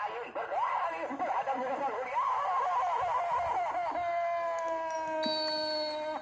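People's voices laughing and shouting excitedly, then one long drawn-out cry held for about two seconds, sagging slightly in pitch.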